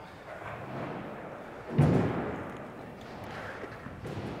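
BMX bike on a skatepark ramp: a single thud a little under two seconds in as the bike comes back down the ramp, dying away over about a second, with the low rumble of the tyres rolling backwards across the floor.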